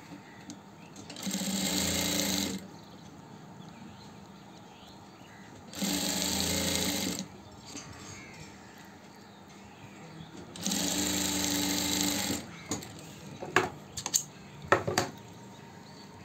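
Industrial sewing machine running in three short bursts of stitching, each about a second and a half, as a fabric piping strip is sewn along the edge of a garment panel. Near the end come several sharp clicks, louder than the machine.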